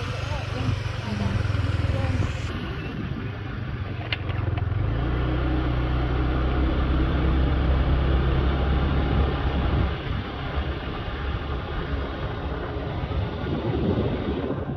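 A road vehicle's engine running steadily while driving, with road noise. The engine note drops lower about five seconds in.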